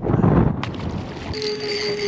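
A small mulloway dropped over the side of a boat, splashing into the water with a short loud rush, then a single click. A steady tone starts about a second and a half in and holds to the end.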